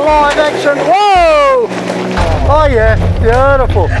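Men riding in a four-wheel-drive cab hollering wordless, drawn-out 'whoa' calls that swoop up and down in pitch, several in a row. A low rumble joins about halfway through.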